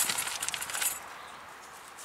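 A plastic bag of brake-pad hardware clips being opened and handled, the plastic crinkling with small metal parts clinking inside for about the first second, then dying down.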